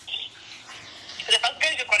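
Speech over a telephone line: a thin, narrow-band voice begins a little over a second in, after a moment of faint line noise.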